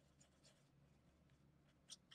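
Near silence, with faint soft taps and scrapes of a paintbrush mixing acrylic paint in a plastic palette tray, and one slightly sharper tap near the end.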